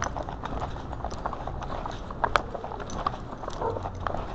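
Footsteps of someone walking on a concrete sidewalk, heard from a body-worn camera, mixed with small knocks and rattles as it jostles. One sharper click comes a little past halfway.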